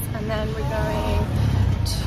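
A woman's voice speaking, over a steady low rumble.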